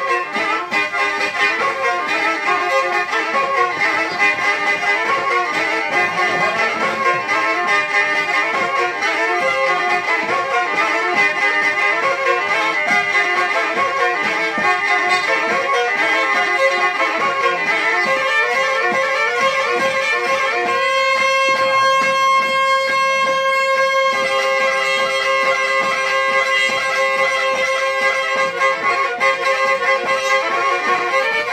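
Black Sea kemençe playing a fast dance tune in quick running notes over its droning strings. About two-thirds of the way through, it holds one sustained chord for some three seconds before the running melody picks up again.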